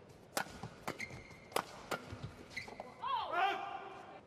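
Badminton rally: about four sharp cracks of rackets striking the shuttlecock in quick succession, with short squeaks of shoes on the court floor. Near the end a player shouts as the point is won.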